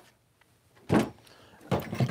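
Tools being handled in a plastic Milwaukee Packout tool box: a single dull clunk about a second in, then a quick clatter of knocks and clicks near the end as tools are moved about inside it.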